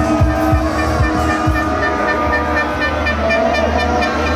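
Horns tooting in long, steady held notes over loud music with a continuous low hum.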